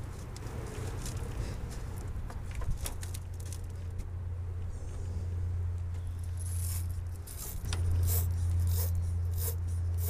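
Wire brush of a battery post cleaner scraping as it is twisted on a car battery post to clean off corrosion. The short scraping strokes come quickly in the second half, over a steady low hum.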